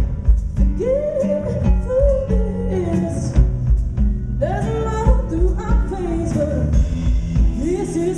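Live band music: a woman singing a sustained, gliding melody over electric guitar chords and a steady drum beat, heard loud with the room's reverberation.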